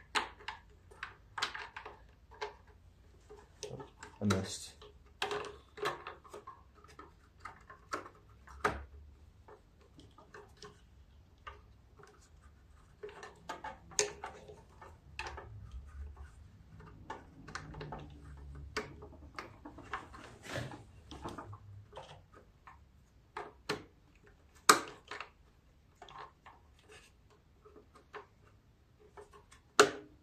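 Irregular clicks, taps and light knocks of plastic and metal parts being handled and fitted onto a snowblower's small engine during reassembly.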